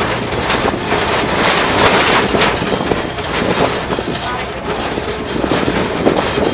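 Wind rushing over the microphone and the rumble of an open-backed truck driving on a rough dirt road, heard from the open back, with irregular clatters and jolts from the bumpy track.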